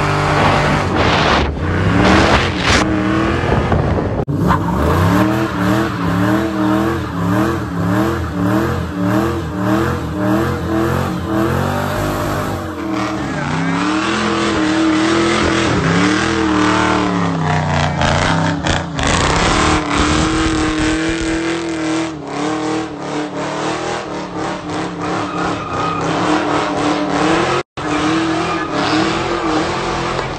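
Fox-body Mustang's engine revving up and down over and over during burnouts and donuts, with tyre noise underneath. The sound comes from several short clips joined together, with a brief dropout near the end.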